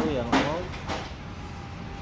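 A man's voice briefly at the start, then low background noise with a faint click.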